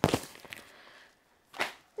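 A cross-stitch kit in its plastic packaging slapped down sharply, followed by a small click and, about one and a half seconds in, a short swish of the plastic as it is slid away.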